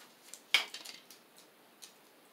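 Orange-handled scissors being picked up and handled among craft supplies: one sharp clack about half a second in, with a few light clicks around it.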